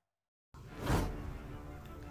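Silence for about half a second, then a swoosh transition sound effect, followed by quiet background music.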